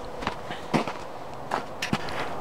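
Four short knocks and scuffs spread over two seconds, from a person getting up and stepping about in snow close to the camera.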